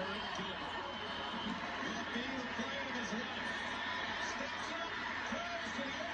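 Football broadcast audio playing faintly in the room: a commentator talking over steady stadium crowd noise.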